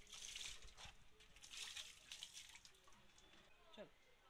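Faint water splashing in two short bursts, one at the start and one about a second and a half in, followed by a brief voice near the end.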